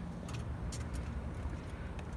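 Low steady outdoor rumble with a few faint scuffs and clicks of footsteps on asphalt.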